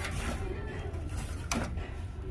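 A wicker basket with a wooden handle being handled: one sharp knock about one and a half seconds in, over a steady low background hum.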